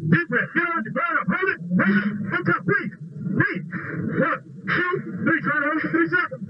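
A man's unintelligible, strained voice heard over a radio-like intercom channel, broken by short breathy hisses.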